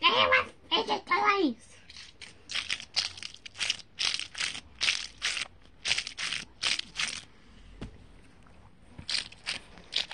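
A child makes wordless voice sounds for the first second and a half, then a run of short hissing sounds, about two a second, lasting several seconds.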